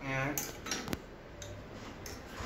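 Metal clinks and taps from the bicycle's handlebar and fittings being worked on: a few sharp clicks, the clearest a little under a second in.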